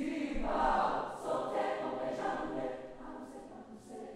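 Mixed choir of young voices singing, swelling sharply in volume at the start.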